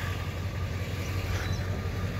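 Pickup truck engine idling with a steady low rumble.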